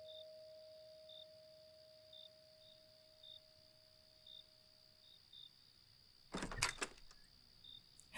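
A two-tone doorbell chime dying away over the first few seconds, with faint high chirps about once a second. Near the end comes a short cluster of clicks and knocks from a door latch as the front door is opened.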